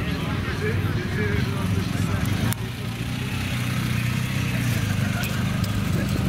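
Police motorcycle engine running at low speed as the bike rolls past, a steady low drone with a brief break about halfway in.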